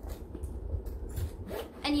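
Hard rose-gold makeup case being handled and opened, with rubbing and scraping along its surfaces and a low rumble of handling.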